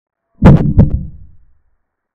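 Chess move sound effect marking a capture: two quick knocks about a third of a second apart, with a short low tail.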